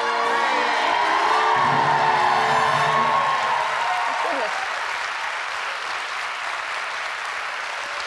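Studio audience applauding, with a short stretch of music over it in the first few seconds; the applause then slowly dies down.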